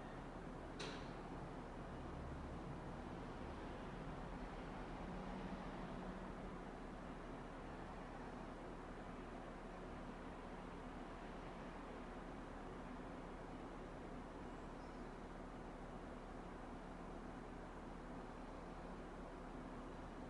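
Quiet, steady room noise with a low hum, and a single short click about a second in.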